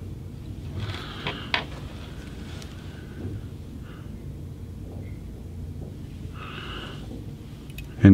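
Quiet room with a steady low hum, faint handling of fly-tying materials at the vise, a couple of small sharp clicks about one and a half seconds in, and a few soft breaths.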